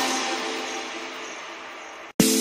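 The final notes of an electronic pop track fading out, the sound dying away steadily over two seconds as the song ends.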